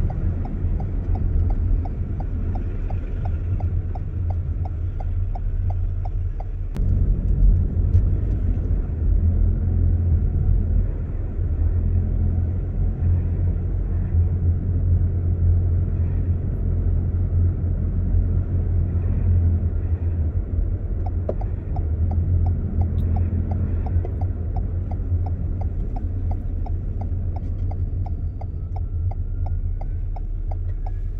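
Car driving, heard from inside the cabin as a steady low rumble of engine and road. A turn indicator ticks about three times a second for the first six seconds and again from about twenty seconds in.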